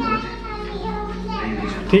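Young children's voices: children talking and chattering.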